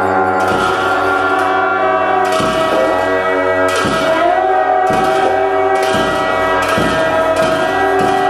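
A pair of gyaling, Tibetan double-reed shawms, playing a sustained, slightly wavering melody in ritual music. Sharp percussion strikes cut in roughly once a second.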